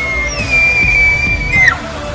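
A bull elk bugling: one long, high whistling call that rises, holds steady for more than a second and drops off sharply near the end. Background music plays underneath.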